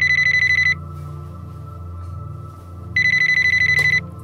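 Telephone ringing in a fast trill, repeating in a regular cadence: one ring ends less than a second in, and the next begins about three seconds in.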